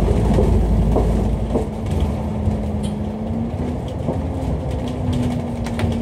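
A Dennis Enviro500 MMC double-decker bus under way, heard from inside on the upper deck: a steady engine and driveline drone with a held whine, and scattered light clicks and rattles from the body.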